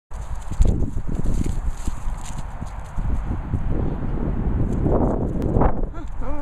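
Irregular low thuds of footsteps on grass close to the microphone, mixed with rubbing and handling noise from a moving handheld camera, swelling louder about five seconds in.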